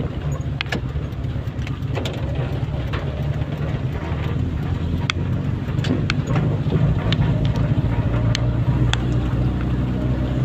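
Steady low hum of a car's engine and road noise heard from inside the cabin, growing a little louder about halfway through. Scattered sharp ticks of rain hitting the windshield come and go over the top.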